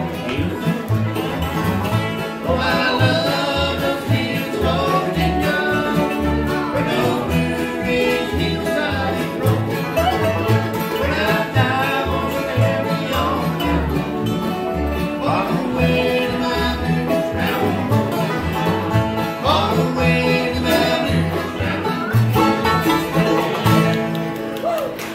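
Acoustic bluegrass band playing live: banjo, mandolin and guitars over an upright bass keeping a steady beat.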